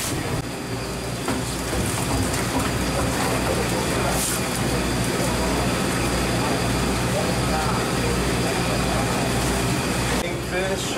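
Steady low rumble of a head boat's engine running, with indistinct voices on deck.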